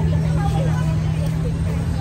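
Street ambience dominated by a nearby motor vehicle engine running with a steady low hum, under the scattered chatter of passers-by.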